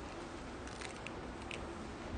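A few faint, short clicks and light handling noise as a pair of eyeglasses is unfolded and put on, over low room hiss.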